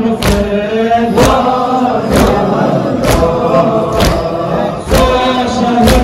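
A crowd of men chanting a mourning lament in unison, with hands beaten on chests together in matam, a sharp strike about once a second.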